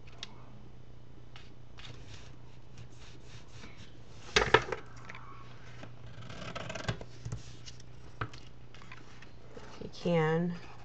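Hands working paper and small craft tools: scattered light taps and clicks, a pair of sharp clicks about halfway through, then a brief papery rustle, over a steady low hum.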